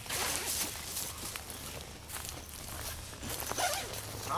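Heavy-duty tent door zipper being run open, with the nylon door fabric rustling and scraping as it is pulled back, a busy string of short scratchy noises, densest in the first second.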